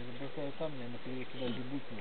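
A man's low voice talking indistinctly, too muffled for words to be made out.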